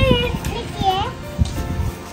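A child's high voice speaking a word or two over background music.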